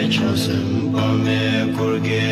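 Tibetan Buddhist devotional chant sung over instrumental music, with long held notes.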